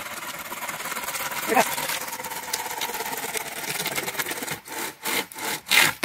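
Homemade two-man wooden-framed buck saw cutting across a log, pulled back and forth by two people: a steady rasping of the blade through the wood, then four separate, louder strokes in the last second and a half.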